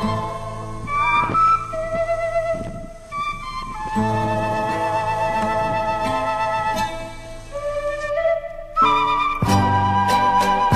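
Background music: a flute melody of held notes over sustained low bass notes, growing fuller near the end.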